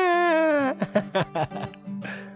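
A man's long, high vocal wail, held and sliding slowly down in pitch, breaking off under a second in, followed by a few short vocal sounds.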